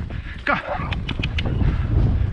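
Wind buffeting the microphone of a camera on a moving horse, a steady low rumble, with a short call that falls sharply in pitch about half a second in and a few quick clicks just after it.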